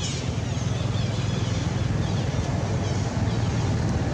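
A motor vehicle running on the road: a steady low engine rumble, with faint high chirps over it.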